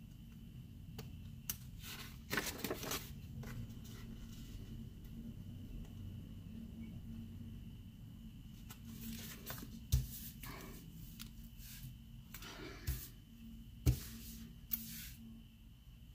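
Scissors cutting sticker paper: scattered short snips and paper rustles, with a few sharper knocks in the second half.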